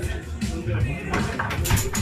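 Background music and voices, with a few sharp knocks from a table-football game, the ball struck by the rod-mounted players, in the second half.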